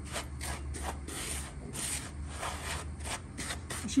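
Fingers raking through coarse dry breadcrumbs in a plastic bowl, a gritty rubbing in short repeated strokes.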